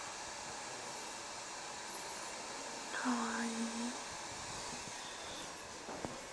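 Steady background hiss with one short, even-pitched voiced sound, like a brief 'ooh' or hum from a person, about three seconds in, lasting just under a second.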